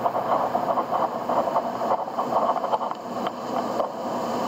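Stylus writing a word on a tablet screen: an uneven rubbing noise that sets in at once and stops just before the end.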